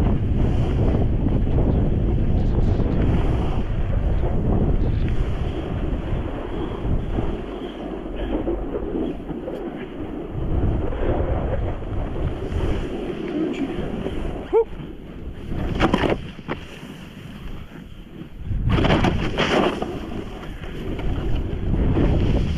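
Wind buffeting an action camera's microphone as a snowboard rides down a powder slope, with the hiss of the board sliding through the snow under it. The noise rises and falls with the turns, and a few sharper, louder swooshes come in the last third.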